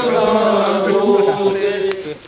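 Voices chanting a Shinto ritual chant in long, drawn-out held notes that drift slowly in pitch, with a short click near the end.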